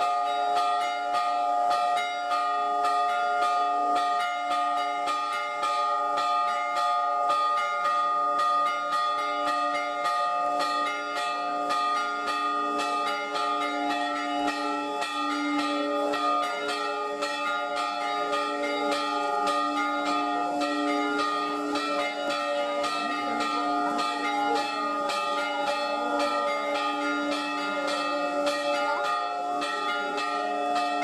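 Church bells ringing continuously in rapid, closely spaced strokes, several a second, each ringing on under the next: the festive peal of an Orthodox church accompanying the icon procession of a feast day.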